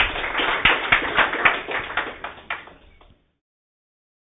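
Audience applauding with many hands, the clapping thinning out and then cutting off suddenly about three seconds in.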